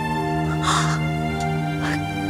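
Sustained background music of held, steady chords, with a short breathy noise just under a second in.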